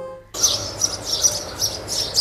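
Birds chirping in a dense run of short, quick, high chirps, starting about a third of a second in over a faint steady hum.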